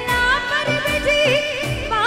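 A woman singing a Rajasthani devotional bhajan live into a microphone, drawing out ornamented, wavering notes without clear words, over instrumental accompaniment with a steady drum beat.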